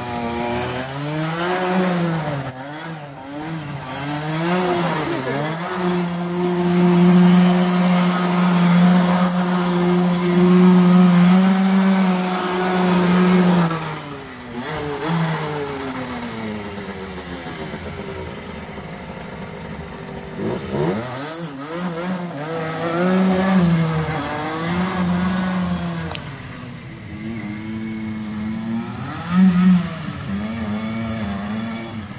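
HM CRE 50 dirt bike's 50cc two-stroke engine revving hard while the bike is spun in circles on snow. It rises and falls in quick revs, holds high revs for several seconds, then drops to lower, uneven revving with a short sharp blip near the end.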